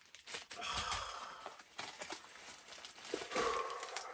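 Crumpled packing paper crinkling and rustling as it is pulled out of a box, with a man's sigh about three seconds in.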